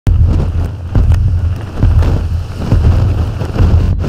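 Cyclone-force wind buffeting the microphone in strong gusts, a loud, surging low rumble. The sound breaks off briefly just before the end.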